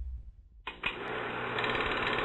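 Film projector running sound effect: a steady, fast mechanical clatter that starts suddenly about two-thirds of a second in, after a low rumble has died away.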